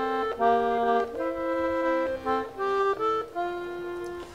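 Accordion playing a slow melody in held notes, stepping from note to note every half second or so.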